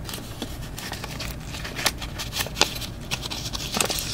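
Pokémon trading cards being handled and sorted by hand: a run of small clicks and rustles.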